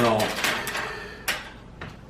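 Objects being handled and set down on a wooden desk: a short scraping, rustling slide, then a single sharp knock about a second and a quarter in, and a fainter click just before the end.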